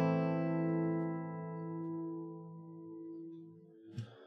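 An A minor chord on an Eastman AC-508 steel-string acoustic guitar, struck once just before and left ringing, fading slowly away. A short click sounds right at the end.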